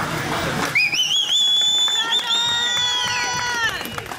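A loud, shrill whistle from a spectator: it swoops upward with a warble, then holds high. About halfway through, a held cheering voice joins it, and both trail off just before the end.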